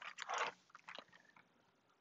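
Paper rustling and crinkling as a large picture-book page is turned and pressed flat, dying away about half a second in, with a couple of faint ticks a little later.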